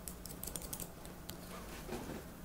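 Hair-cutting scissors snipping through wet hair: a quick run of crisp clicks in the first second, then a couple of single snips.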